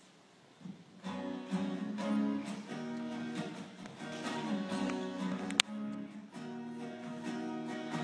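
A guitar starts playing a song's intro about a second in, after a near-silent start, and keeps a steady strummed and plucked pattern. A single sharp click sounds about halfway through.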